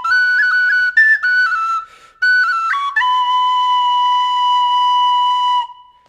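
D tin whistle playing the closing phrase of a jig in quick ornamented notes, with a short break for breath about two seconds in. It ends on one long held note that stops shortly before the end.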